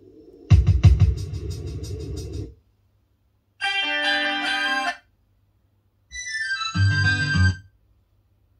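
Recorded music played through a Bell Carillon vacuum-tube amplifier and speakers, heard as three short snatches, each a second or two long and cut off abruptly, with silence between them.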